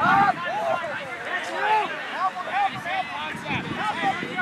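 Several people's voices talking and calling out at once, overlapping and indistinct, with no clear words.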